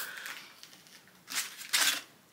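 Parcel packaging being handled: two short rustling scrapes, about a third of a second apart, in the second half.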